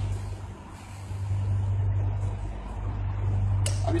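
A steady low machine hum runs throughout, with nothing else standing out above it.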